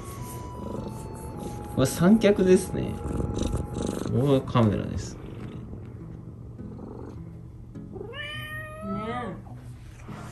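Domestic cat meowing close up: one long meow near the end that rises and then falls in pitch, after louder short calls a couple of seconds in. Soft background music runs underneath.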